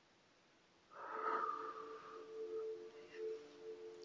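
A woman's audible breath starting about a second in, loudest at first and tailing off, with a faint steady hum underneath.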